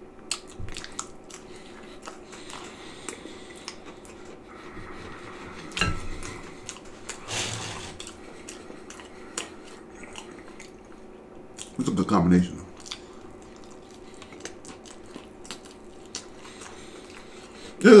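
Close-up chewing and wet mouth sounds of a man eating pork-and-beans-topped cheese pizza by hand, with many small clicks, a knock of dishes about six seconds in and a short hummed "mm" about twelve seconds in.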